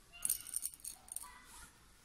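Small beads rattling and clicking against each other in a cluster of quick, bright clicks lasting about a second and a half, as a bead is picked up on the needle.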